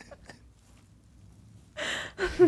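Quiet room tone, then near the end a short, breathy gasp from a person.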